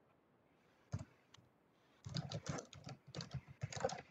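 Computer keyboard typing, faint: a single keystroke about a second in, then a quick run of keystrokes over the last two seconds.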